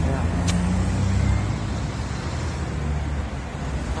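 A vehicle engine idling steadily close by, a low, even hum. There is a single sharp click about half a second in.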